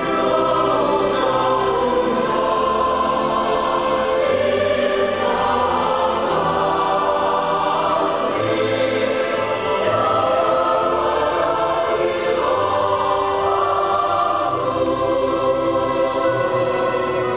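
Mixed choir singing in harmony, in long held chords.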